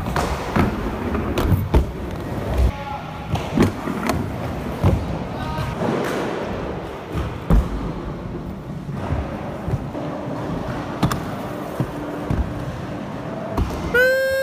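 Inline skate wheels rolling over skatepark ramps, with a series of sharp knocks and thuds at irregular intervals from landings and hits on the obstacles.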